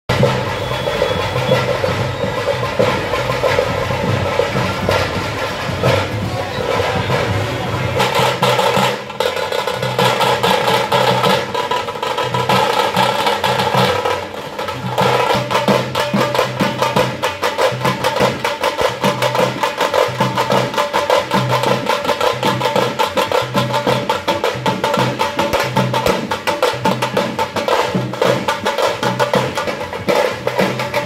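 Procession drum band: a dhol and several stick-played drums beating a fast, steady rhythm, with crowd voices mixed in.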